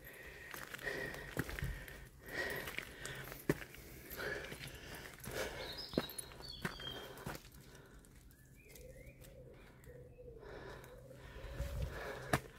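Footsteps on a gravel woodland path, with a few bird calls: high chirps about halfway through and low cooing near the end.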